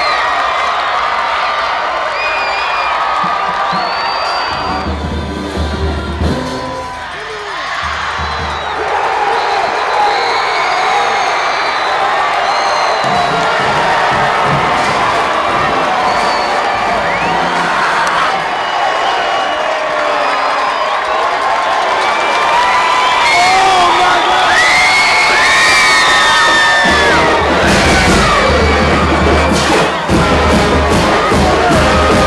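Packed football stadium crowd cheering, shouting and whooping, with music playing underneath and a deep beat coming and going.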